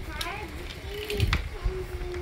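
A young child's voice, faint and wavering, ending on a held tone near the end, over the handling of small plastic toys on a wooden table, with one sharp click about a second and a quarter in.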